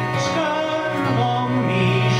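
Uilleann pipes playing a slow melody on the chanter over a steady drone, with acoustic guitar accompaniment.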